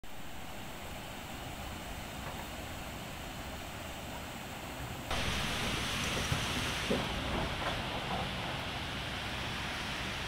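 Steady rushing outdoor noise, which jumps to a louder, brighter rush about five seconds in, with a few faint short sounds over it.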